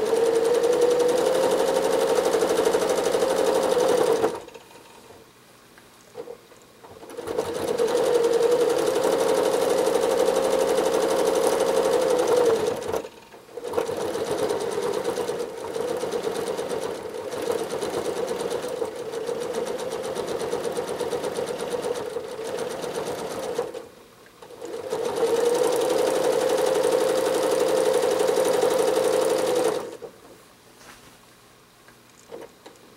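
Janome Horizon 7700 sewing machine stitching free-motion quilting, running in four spells with short stops between them; the long middle spell is a little quieter.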